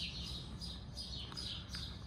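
Songbirds chirping in garden trees: a run of short, high chirps, a few a second.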